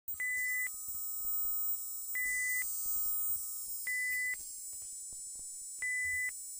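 Electronic beeps from an intro sound effect: four steady high beeps, each about half a second long, come roughly every two seconds. A constant hiss of static and faint scattered crackles run underneath, and a fainter lower tone sounds under the first three beeps.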